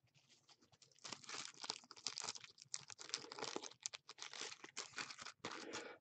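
Faint, irregular crinkling and rustling of plastic card sleeves being handled, with many small crackles, starting about a second in.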